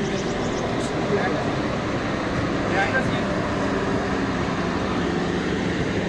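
Steady low hum and rumble, with faint voices talking in the background.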